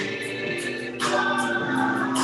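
Church choir singing, holding long notes, growing louder about halfway through.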